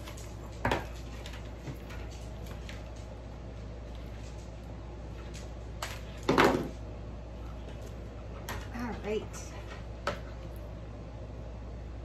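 Scattered clicks and knocks from a ceramic mini wax warmer and its plug and cord being handled as it is plugged in, the loudest cluster about six seconds in, over a steady low hum.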